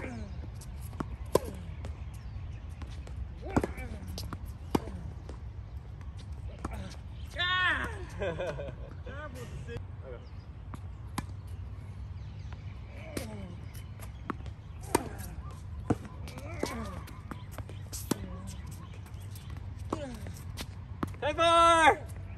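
Tennis balls struck by racquets and bouncing on a hard court during rallies, as sharp single pops a second or more apart. A short shout comes about seven seconds in, and a loud cheer near the end as a point is won.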